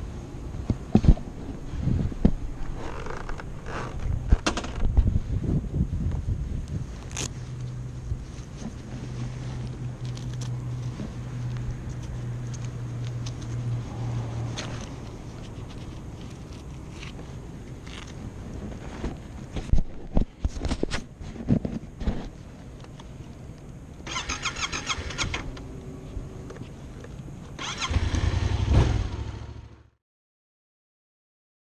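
Yamaha FZ-07 motorcycle, its 689 cc parallel-twin engine running with a steady low hum for several seconds and a short loud burst near the end. Many knocks and clicks of the rider handling the ignition, controls and gear are mixed in.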